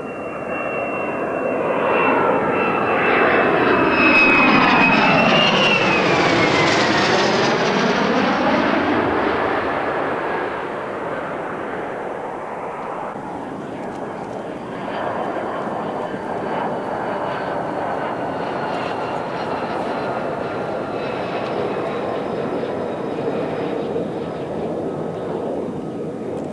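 The single turbofan of an F-35 Lightning II fighter jet passing low overhead, loudest a few seconds in, its high whine dropping in pitch as it goes by about six seconds in. Then a steady jet engine rumble with faint whining tones as the jet runs on the runway.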